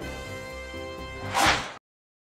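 Closing theme music ending on a loud swishing sound effect about one and a half seconds in, then cutting off suddenly.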